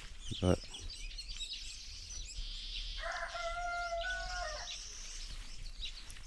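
A rooster crowing once, a single held call about three seconds in lasting under two seconds, over the steady chirping of small birds.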